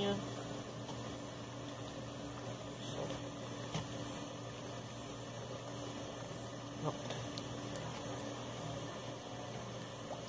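Steady background hiss with a constant low hum, broken by a few faint short clicks about three seconds in and again near seven seconds.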